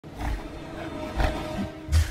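Low growls from King Kong, the giant gorilla's film creature voice: three heavy bursts about a second apart, the later ones louder, over a music track with held notes.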